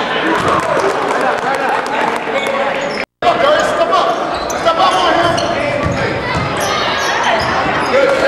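Live game sound in a gymnasium: a basketball bouncing on the hardwood court amid shouting from players and spectators, all echoing in the hall. The sound cuts out for a moment about three seconds in, then resumes.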